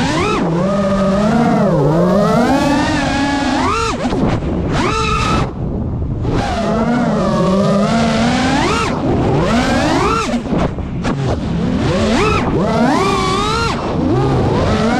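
FPV racing quadcopter's brushless motors and propellers whining, the pitch swooping up and down as the throttle is worked, with short drops where the throttle is cut about five seconds in, again about six seconds in, and briefly near ten to eleven seconds.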